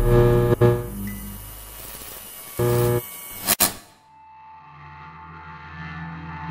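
Theme music of a documentary title sequence winding down, with a short burst just before a sharp hit about three and a half seconds in. A quieter sustained ambient tone follows.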